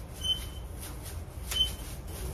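Paint roller on an extension pole rolling latex paint onto a wall: soft sticky swishing strokes, with a short high squeak twice, about a second and a half apart.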